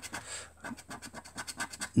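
A lottery scratchcard's coating being scraped off with a small metal scratcher, in a quick run of short back-and-forth strokes.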